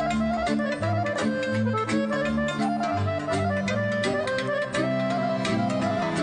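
Weltmeister piano accordion playing a quick folk melody, accompanied by a folk orchestra of strings with a bass line pulsing on the beat.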